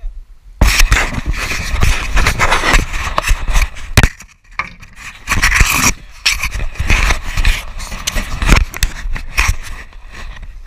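Clothing fabric rubbing and scraping against the camera and its microphone, loud and rough. It starts about half a second in and goes on in uneven bursts, with a brief pause about four seconds in.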